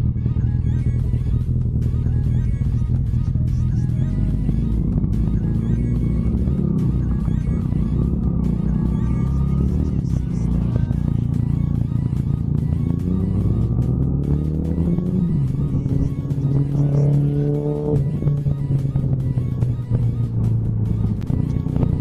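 Background music over a Hero Splendor Plus motorcycle's single-cylinder engine running at road speed. The engine note rises about two-thirds of the way through.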